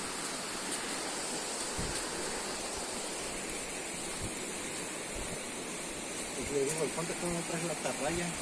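A steady rushing hiss of outdoor background noise, with a few soft low thumps of footsteps on a dirt trail.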